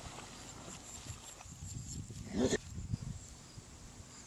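Scottish Terrier giving a single short bark about two and a half seconds in, running backwards so that it swells up and cuts off suddenly.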